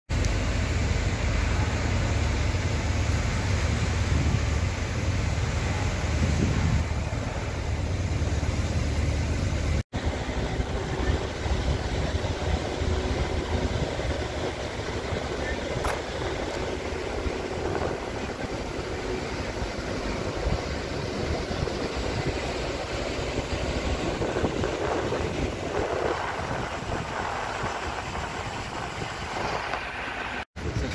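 Steady outdoor shipyard noise: a low rumble of engines and site machinery, heaviest for the first ten seconds, with a brief cut about ten seconds in.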